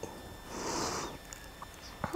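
A short, soft sniff, a quick breath in through the nose, about half a second in.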